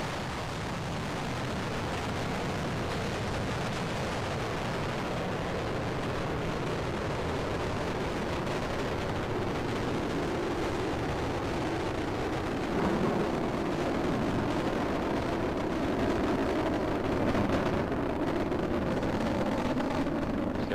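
Space Shuttle Discovery's solid rocket boosters and main engines during ascent: steady, noisy rocket exhaust sound, growing a little louder partway through.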